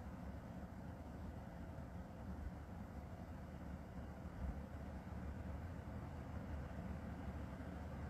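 Quiet, steady background noise: a low rumble with faint hiss and no distinct sounds.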